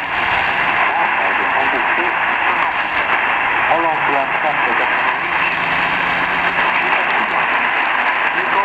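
Weak shortwave AM broadcast on 13670 kHz heard through a Tecsun PL-310ET portable receiver: loud steady static hiss with a faint French-language voice buried in it, surfacing most clearly about halfway through.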